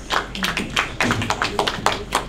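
An audience clapping, with individual hand claps standing out in a quick, irregular patter.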